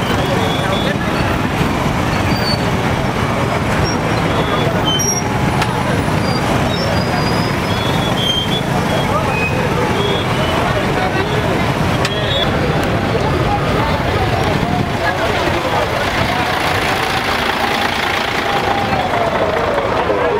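Busy street din: traffic noise from motorcycles and other vehicles mixed with the voices of a crowd, loud and steady throughout.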